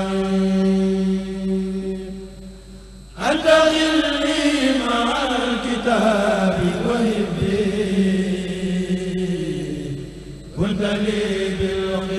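A kurel of men chanting a Mouride khassida (Arabic religious poem) together through microphones. A long held note fades out about two seconds in, a loud new phrase begins just after three seconds with a winding melody, and another phrase starts near the end.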